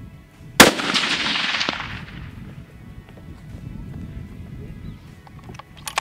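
A single .308 Winchester hunting rifle shot about half a second in, its report rolling away in a long echo that fades over about a second and a half.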